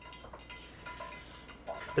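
Bare hands squeezing and mixing a wet batter of grated beets and parsnips in a stainless steel bowl, faint, over a low steady hum.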